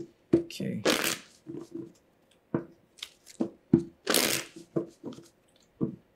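An oracle card deck being shuffled by hand: a run of short taps and slaps of cards, with two longer rustling bursts about a second in and about four seconds in.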